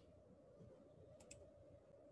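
Near silence, with two faint clicks in quick succession just over a second in.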